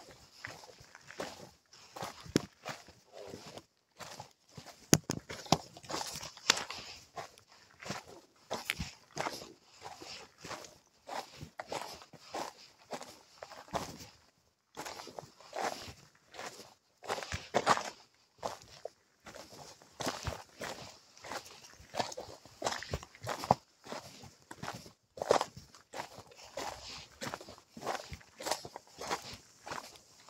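Footsteps of a hiker walking downhill on a rocky dirt trail, an uneven series of short scuffing steps about two a second.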